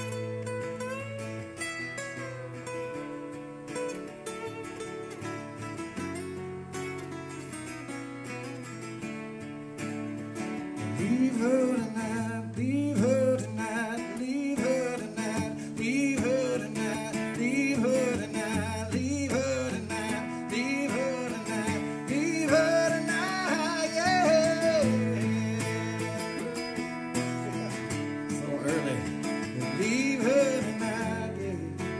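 Live solo acoustic guitar with a man singing to it. The guitar plays on its own for about the first ten seconds, then the singing comes in and runs on over the strumming.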